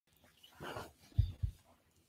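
A faint breath-like rustle, then two soft low thumps about a quarter second apart, as of something bumping near the microphone.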